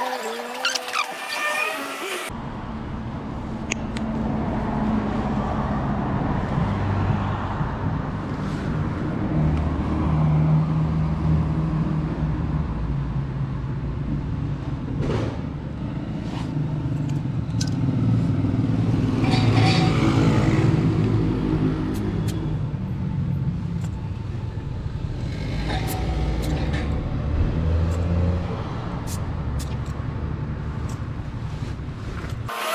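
Low engine hum that swells and eases throughout, with a man's voice briefly at the start and again about twenty seconds in.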